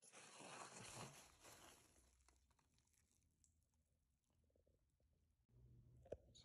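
Faint crinkling rustle of bubble wrap and packing peanuts being handled in a cardboard box, fading after about two seconds to near silence with a few faint clicks.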